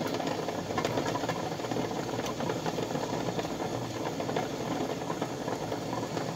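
Water boiling hard in a stainless steel pot with two sealed cans in it: a steady bubbling hiss, dotted with small clicks.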